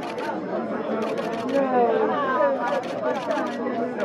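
Overlapping voices chattering in the background, broken by bursts of rapid camera shutter clicks, a cluster about a second in and another near three seconds.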